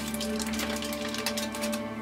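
Aluminium foil crinkling in short rustles as it is pulled open by hand, over steady background music.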